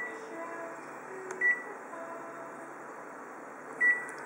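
Short high beeps from a photocopier's touchscreen control panel as its buttons are pressed: one at the start, one about a second and a half in, and one near the end.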